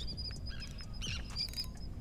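Birds chirping: a run of short, high peeps, with a fuller burst of chirps about a second in.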